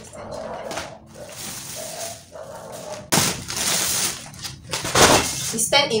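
Plastic packaging and a black plastic bin bag rustling and crinkling as packs of hair extensions are handled and pulled out, in two long bursts.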